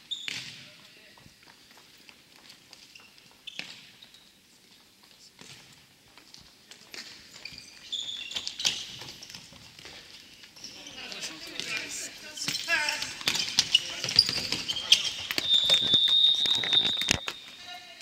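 Futsal ball kicks and bounces knocking on a wooden sports-hall floor, with players shouting, sparse at first and busier and louder in the second half. A long high-pitched tone sounds for about two seconds near the end.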